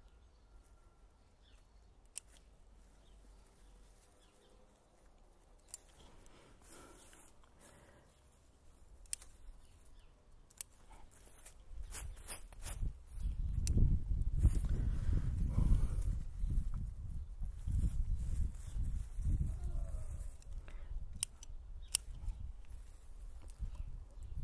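Bonsai scissors snipping leaf stems and shoots from a Japanese maple, a few sharp snips spaced seconds apart. From about halfway, a louder, uneven low rumble fills the rest.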